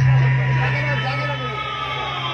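Many voices of a crowd talking and calling out at once over a steady low hum.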